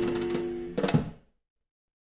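Closing bars of a 1955 Chicago blues band recording (harmonica, guitars, bass and drums). A held chord fades, a short cluster of final hits lands just under a second in, and the recording ends abruptly.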